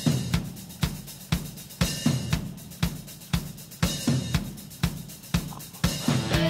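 Drum kit playing a steady beat, with hits about two a second over cymbals: the intro of a music track.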